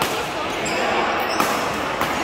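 Busy badminton hall: players' voices and court noise, with one sharp hit about one and a half seconds in, typical of a racket striking a shuttlecock.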